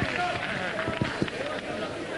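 Indistinct voices talking, with a few dull knocks about a second in.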